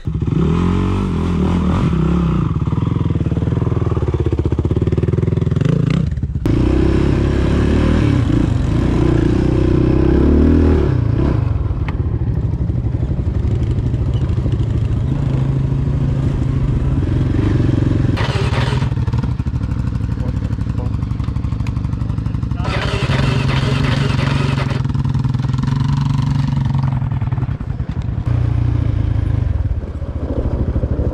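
ATV engine running as the quad is ridden along a dirt trail, its pitch rising and falling with the throttle, with a brief dip about six seconds in. Two stretches of rushing noise come in around the middle and later on.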